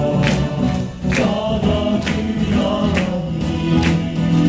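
Upbeat pop-style song played over stage loudspeakers: voices singing together over a steady beat of about one hit a second.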